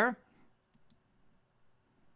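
Two faint computer mouse clicks in quick succession, a little under a second in.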